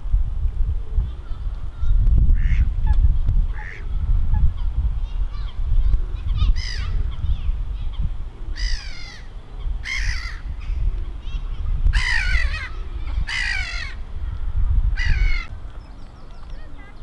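A series of about eight bird calls, short and spaced in the first half, louder and longer in the second half, over a steady low rumble.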